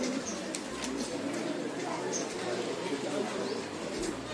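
Open-air market ambience: a steady murmur of background voices with birds calling, including two short high chirps, one near the start and one about two seconds in.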